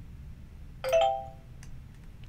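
A short two-note chime about a second in, struck twice in quick succession, the second note higher, ringing out for about half a second. A few faint clicks are heard around it.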